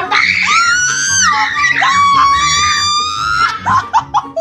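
A person screams in one long, high-pitched cry that breaks off after about three and a half seconds. It is a startled scream at the sight of cockroaches planted on the bed.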